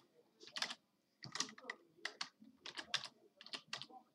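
Computer keyboard typing: a faint run of short, separate key clicks at an uneven pace, about a dozen keystrokes.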